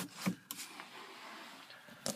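Quiet car cabin with faint handling noise: a couple of soft knocks in the first half second, then a low hush and a small click at the end.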